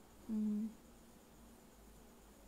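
A woman's short, steady hum at one pitch ("mm"), lasting under half a second, about a third of a second in.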